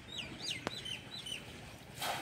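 A bird calling nearby: a quick run of about six short, high chirps, each falling in pitch, in the first second and a half, with one sharp click in the middle.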